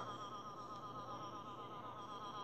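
Google Translate's synthetic text-to-speech voice reading out a long string of Japanese 'a' characters: a fast, unbroken run of 'ah' syllables at one steady pitch that blurs into a rippling drone.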